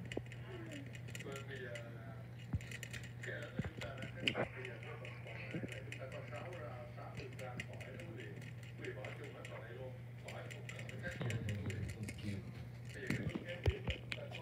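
A hamster drinking from a water bottle's metal sipper tube, its tongue working the ball valve in rapid, irregular ticks. Voices talk in the background over a steady low hum.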